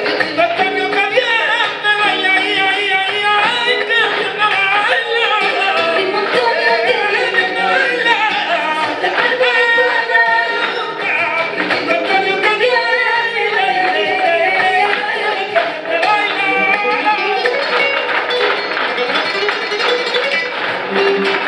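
Flamenco song: a voice singing long, wavering, ornamented lines over instrumental accompaniment, with sharp rhythmic strikes through parts of it.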